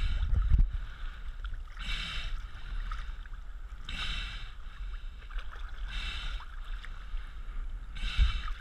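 Seawater sloshing against a floating GoPro HERO 3 Black's waterproof housing as it bobs at the surface, with splashing knocks in the first half-second. After that, a hiss of water washing over the housing swells about every two seconds over a low rumble.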